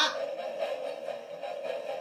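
Toy electric-shock lie detector giving a steady electronic buzz while it tests an answer.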